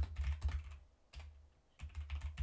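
Computer keyboard typing: a quick run of keystrokes, a pause of about a second, then more keystrokes near the end.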